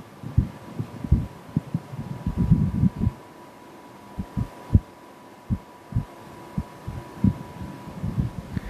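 Irregular low thumps and rumbles, about a dozen of them, of handling noise on a microphone lying on the altar as hands rest on it and move, with a faint steady tone underneath.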